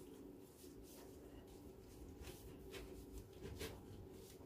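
Faint, soft rubbing of a gloved hand spreading oil over a metal baking tray, a scatter of light swishes over a low steady hum.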